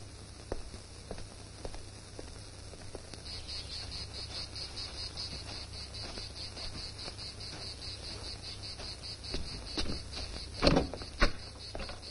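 Insects chirping in a high, even, rapidly pulsing rhythm that sets in about three seconds in and keeps on steadily. Footsteps through dry brush sound faintly, and two louder knocks come near the end.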